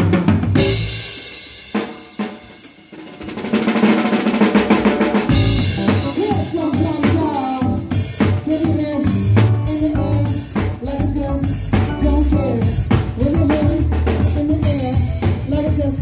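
Live band: a drum kit's cymbal crashes ring and fade over the first few seconds, with a second crash a little later; about five seconds in, bass guitar and drums come in with a steady groove and a melodic line over it.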